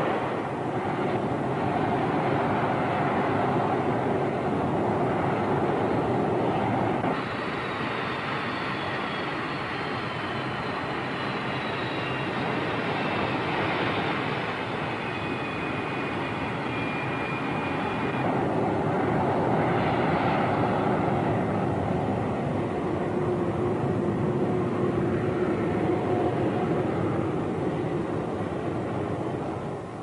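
Jet engine noise from Lockheed F-80 Shooting Star fighters' Allison J33 turbojets running on the ground: a steady, loud roar. A high whine falls slowly in pitch from about seven to seventeen seconds in, and the level steps down about seven seconds in and back up around eighteen seconds.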